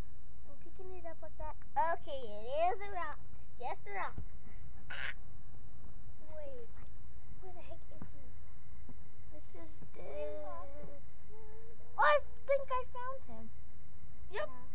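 Children's high-pitched voices in short exclamations and murmurs without clear words, with a brief hiss about five seconds in.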